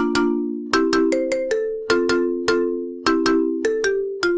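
Background film music: a repeating melody of bell-like struck notes, several a second at changing pitches, each ringing out and fading over a chord.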